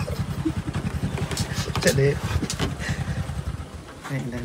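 A small motorcycle engine running nearby with a steady low throb, fading away near the end.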